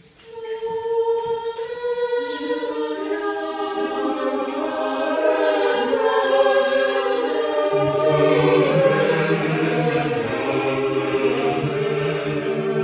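Mixed choir singing unaccompanied polyphony. A single upper part enters first, a lower part joins about two seconds in, and low men's voices join about eight seconds in.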